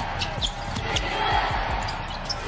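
Basketball being dribbled on a hardwood court: a run of short bounces a fraction of a second apart, over steady arena background noise.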